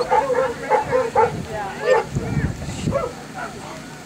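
A dog yipping and whining in a string of short, wavering high calls, thinning out in the second half.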